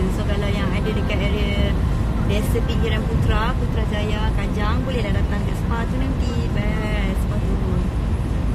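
Steady low rumble of a car heard from inside the cabin, with a voice coming and going over it.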